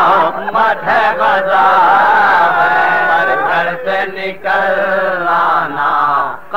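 A male voice reciting an Urdu marsiya in a slow, melodic chant. Long drawn-out lines are broken by a couple of short pauses for breath.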